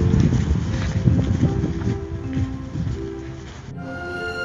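Background music with held notes over heavy wind rumble on the phone microphone; the wind noise cuts off abruptly near the end, leaving the music alone.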